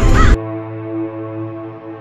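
A loud, noisy sound-effect burst with short shrill cries cuts off abruptly about a third of a second in. It gives way to a steady, sustained ambient music drone.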